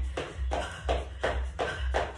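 Quick, even footfalls of trainers landing on a wooden floor, about four a second, from a split-shuffle exercise, over a low steady music beat.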